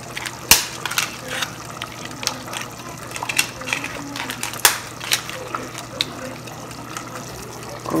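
Kitchen handling sounds: scattered sharp clicks and taps, two of them loud, about half a second in and near five seconds, as pasta sheets are laid into a glass dish of sauce. Underneath are a faint liquid bubbling sound from the hot sauce and a steady low hum.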